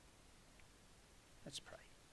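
Near silence: quiet room tone, broken once by a brief faint sound about one and a half seconds in.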